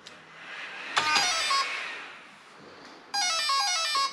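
An RC car's electronic speed control powering up: the brushless motor plays the ESC's start-up tones, a run of stepped beeps about a second in and a louder series of notes from about three seconds in, signalling that the ESC has powered on and armed.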